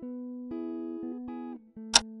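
Background music: a plucked-string melody moving in short stepped notes. A sharp click sounds near the end, louder than the music.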